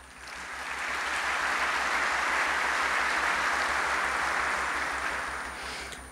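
Large audience applauding in an auditorium. The clapping builds over the first second, holds steady, then dies away near the end.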